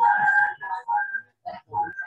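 Audio feedback on a video call: a steady whistling tone with a lower tone beneath it rings over broken, echoing voice fragments, dies away a little over a second in, and comes back briefly near the end. The participants put it down to another computer nearby being connected to the room's TV.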